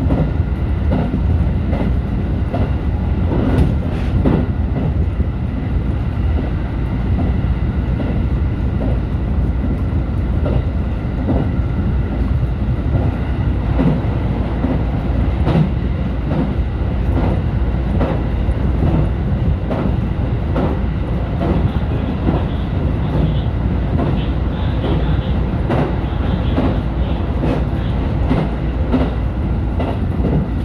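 JR Central 313-series electric train running at speed, heard from the leading car: a steady low rumble with a faint steady whine, and frequent clicks of the wheels over rail joints.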